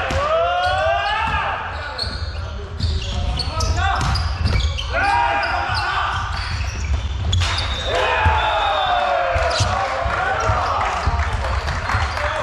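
Volleyball rally in a large sports hall: sharp smacks of hands on the ball, beginning with a serve, amid players' short shouted calls throughout.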